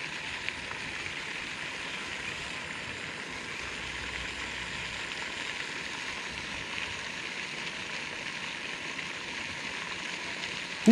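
Pond fountain splashing: a steady, even rush of falling water.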